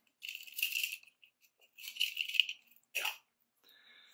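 Stiff 18 gauge craft wire scraping and rattling against a plastic wire spool as it is coiled around it and worked loose: two rattling scrapes of about a second each, then a short sharp one near the end.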